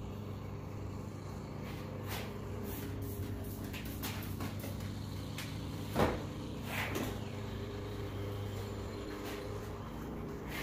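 A steady low mechanical hum with a few short knocks or clicks on top, the loudest about six seconds in.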